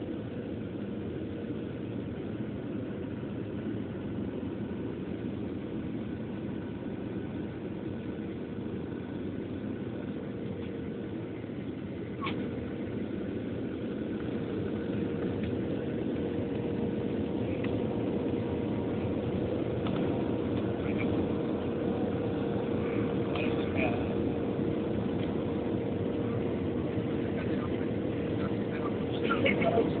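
Cabin noise of a Boeing 737-700 on its final descent: a steady rushing drone of airflow and engines with a constant hum. It grows gradually louder from about halfway through.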